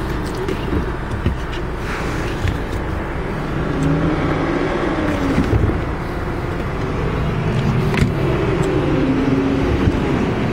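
Volkswagen Passat 2.0T's turbocharged four-cylinder engine idling steadily, with a few light knocks from hands on the trunk.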